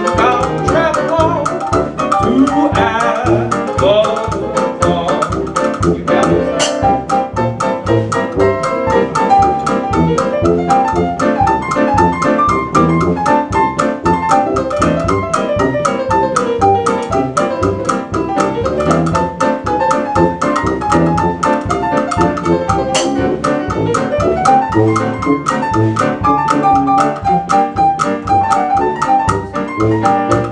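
Instrumental break from a small old-time jazz band: a drum kit keeps a steady beat under a tuba bass line and piano, with a melody line winding up and down over them.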